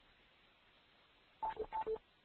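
Electronic beeps about one and a half seconds in: two quick pairs, each a higher tone stepping down to a lower one, after a stretch of near silence.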